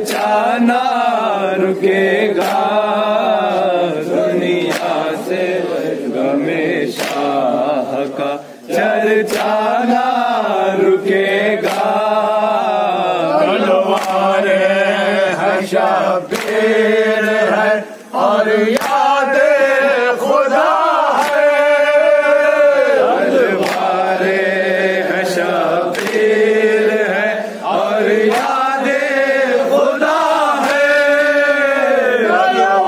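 A group of men chanting an Urdu noha (Shia mourning lament) in unison, with repeated sharp slaps of matam, hands beating on chests, in time with the chant.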